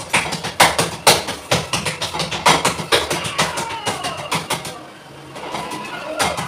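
Hands patting and slapping a lump of flatbread dough in a steel plate: sharp, uneven slaps about two a second, with a short pause about five seconds in.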